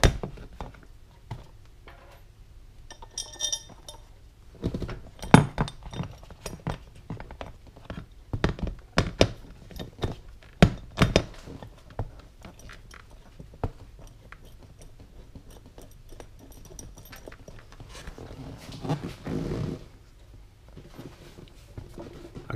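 Irregular knocks and clicks of a black metal backrest mounting bracket being handled and pressed into place against a motorcycle's plastic seat pan, with a brief ringing metallic clink a few seconds in and a short stretch of rubbing and scraping near the end.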